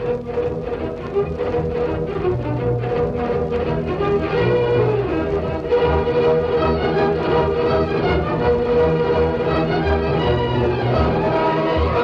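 Orchestral music led by strings, with a quick repeated pulse over the first few seconds, then held chords.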